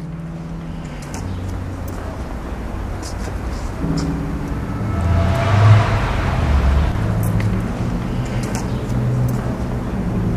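A car passes: its noise rises to a peak about halfway through and eases off, over a steady street background.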